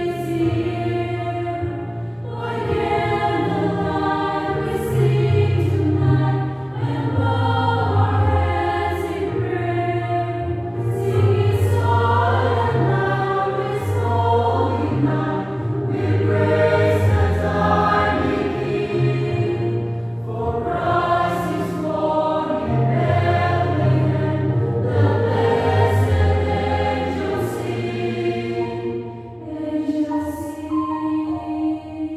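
Mixed choir of men and women singing a Christmas song in parts, with held chords and steady, full volume throughout.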